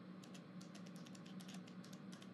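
Faint computer keyboard typing: a quick, irregular run of soft key clicks, several a second.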